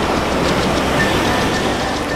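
Wind blowing across the camera microphone together with ocean surf: a steady rushing noise with a low rumble.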